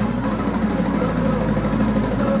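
Live rock band playing a loud, dense droning passage of steady low tones, with bass, guitars, keyboard, saxophone and drums.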